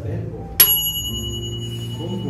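A desk service bell (call bell) struck once, a sharp ding about half a second in that rings on with a clear high tone for a couple of seconds.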